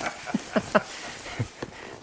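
Shipping box and packaging being handled while it is opened: a few short scrapes, rustles and taps.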